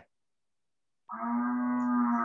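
A cow mooing: one long, steady call starting about a second in, picked up over a video call.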